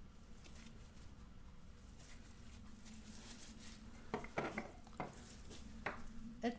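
Faint scratchy dabbing of a paintbrush on a painted canvas, with a few light knocks about four and five seconds in.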